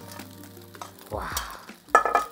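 A metal spatula stirring and scraping rice and egg around a hot wok, with light frying and small clicks. A sharp metallic knock of the spatula on the wok comes just before the end.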